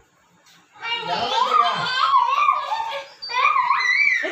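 A young child's high-pitched voice calling out in two drawn-out stretches, the second rising in pitch near the end.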